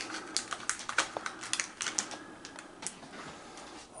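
Packaging being handled close by: a quick, irregular run of light clicks and crinkles that thins out near the end.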